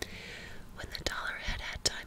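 A woman whispering a few words, with a few sharp clicks between them.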